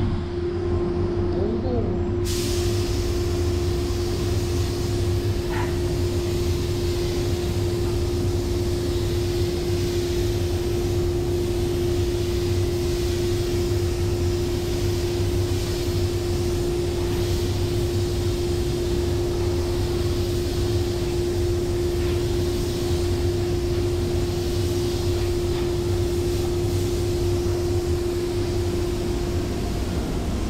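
Gravity-feed spray gun hissing steadily as paint is sprayed, starting about two seconds in, over the steady low rumble and hum of the paint booth's ventilation.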